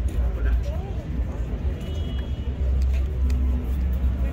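Steady low rumble of city road traffic, with faint voices in the background.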